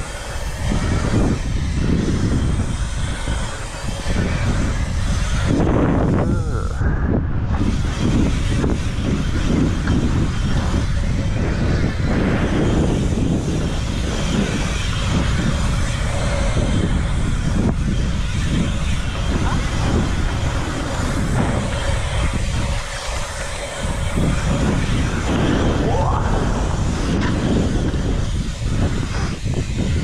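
Wind buffeting a helmet-mounted action camera's microphone, mixed with bike tyres rolling over an asphalt pump track. The noise is loud, steady and deep, with no clear tone.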